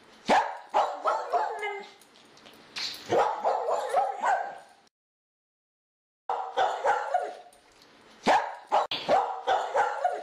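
A dog barking and yipping in short repeated bursts, with a dead-silent gap lasting just over a second about five seconds in.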